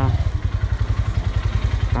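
Motorcycle engine running at low revs with a steady, quick low pulse as the bike rolls slowly forward.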